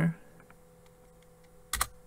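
A single sharp computer keystroke near the end, the Enter key pressed, over a faint steady hum.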